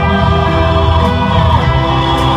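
Live concert music from a band on an outdoor stage through a PA, with choral singing in long held notes over a steady, heavy bass.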